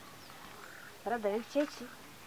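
Speech only: a voice calls "brother, brother" with a wavering pitch about a second in, over a quiet background.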